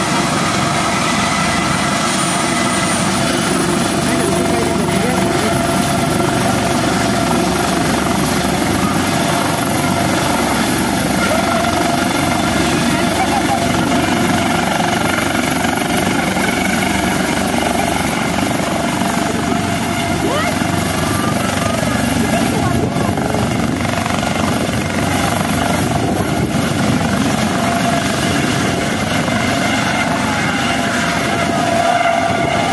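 Helicopter with a ducted fenestron tail rotor running its turbines at high power through lift-off into a low hover: a loud, steady rotor and turbine noise with high-pitched whining tones, one of which steps up in pitch about three seconds in.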